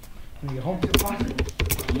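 Keys of a computer keyboard being typed on, a quick run of key clicks several times a second.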